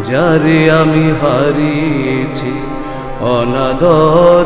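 Male voice singing ornamented, gliding melodic phrases in raga Patdeep over a steady harmonium drone, one phrase at the start and another about three seconds in.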